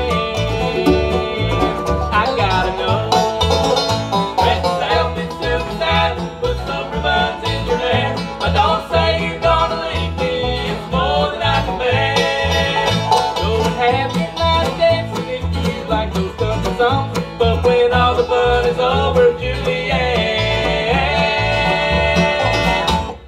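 Live acoustic bluegrass band playing an instrumental break on banjo, fiddle, guitar and mandolin over a steady plucked upright bass beat.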